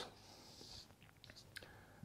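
Near silence, with a faint brief scratch of a marker drawn across a whiteboard and a couple of tiny ticks.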